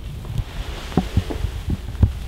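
Handling rumble on a handheld camera's microphone as it is moved, with a few soft low thumps about a second in and again near the end.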